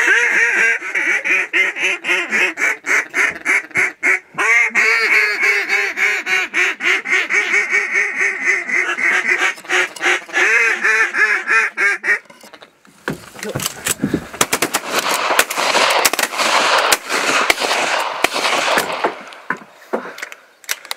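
Loud, rapid and even series of duck quacks, several a second, lasting about twelve seconds. It then gives way to a rough rustling and scraping noise with clicks.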